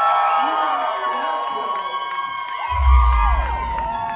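A singer holding a long note through a microphone while the audience cheers and whoops over it, with a deep bass boom coming in about three-quarters of the way through.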